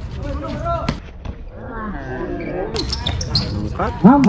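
Basketball bouncing on a hard court in a game: several sharp knocks in the first second and again about three seconds in, with players' voices calling out.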